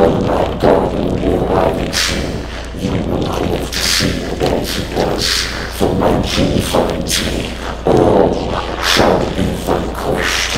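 A heavily distorted, processed monstrous voice speaking in garbled bursts with thudding hits, over a steady low hum.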